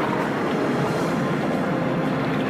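Thunder rumbling steadily.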